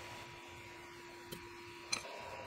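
Two light metallic clicks, about half a second apart, of a wrench on the Ender 3 V2's hot nozzle and heater block as the nozzle is unscrewed, over a faint steady hum.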